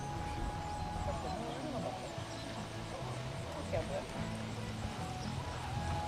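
Faint background of distant people talking and music, with held tones and murmuring voices over a steady low hum.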